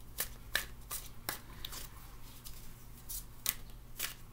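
A deck of cards being shuffled by hand, a series of short, crisp card flicks at an uneven pace.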